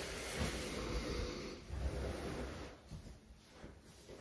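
Rustling of a large bath towel as it is spread out and laid down on the floor, loudest in the first second and a half and then fading to faint handling noises.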